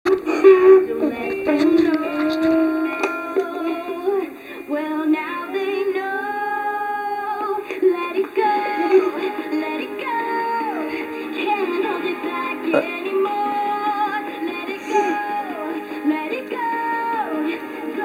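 A pop song with a sung melody line playing through a child's toy karaoke machine speaker.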